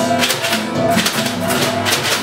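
Band music without singing: acoustic guitar and keyboard chords over a steady beat of sharp percussive strokes about twice a second.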